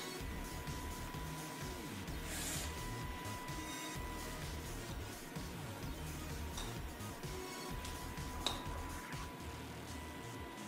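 Low background music, with a single sharp click about eight and a half seconds in.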